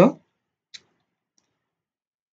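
The end of a spoken word, then a single short click about three quarters of a second in.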